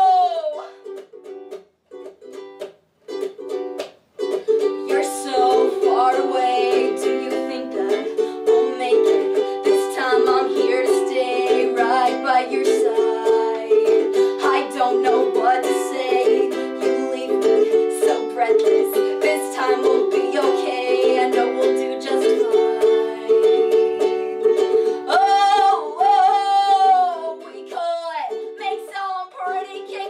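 A woman singing to her own strummed ukulele in a small room. A long sung note ends at the start, a few sparse strums follow, then steady chord strumming comes back in about four seconds in, with another long wavering sung note near the end.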